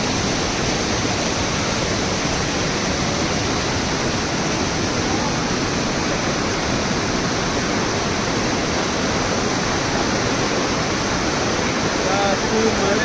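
A waterfall close by: a loud, steady rush of falling water.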